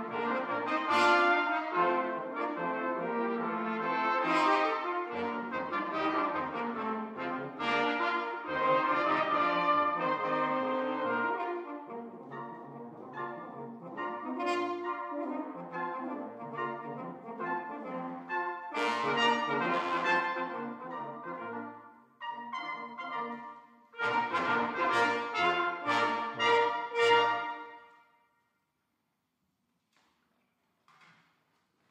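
Small brass ensemble playing 19th-century chamber music on period instruments, with several brass voices sounding together from high to low. Near the end a few loud chords are played, then the music stops about two seconds before the end.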